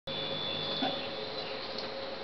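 Steady background hiss and hum of room tone with a faint high whine, and a brief faint sound a little under a second in.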